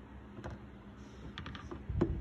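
Faint room tone with light handling clicks and taps: one about half a second in, then a small cluster of three or four about a second and a half in.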